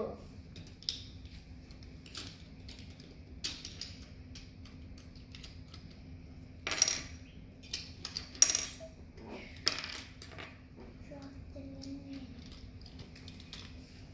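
Plastic Lego bricks clicking and knocking as they are handled and pressed together to fit the roof onto a small brick-built cart: scattered clicks, with a few sharper ones about halfway through.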